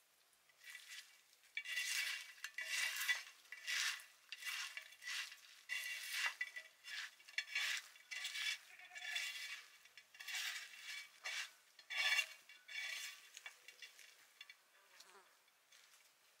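Steamed small fish being mixed and mashed by hand with spices in a clay bowl: a run of short wet rubbing and squishing strokes, about one or two a second, that fade out near the end.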